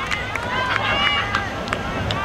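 Several voices shouting and cheering over one another across an open field, with a low wind rumble on the microphone.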